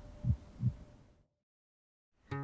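Two low, short thumps close together, a heartbeat-like sound-design hit, after which the sound fades out to complete silence a little over a second in.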